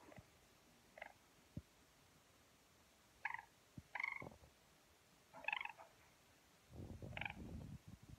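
Four-week-old yellow golden pheasant chick giving quiet, short trilling calls, about five of them spaced a second or more apart. A low rustle of handling comes near the end.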